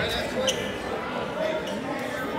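Crowd chatter from spectators in a school gymnasium, with one sharp knock about half a second in.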